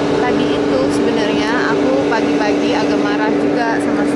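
Loud steady mechanical hum holding one constant low tone, from a machine the speaker takes for a generator.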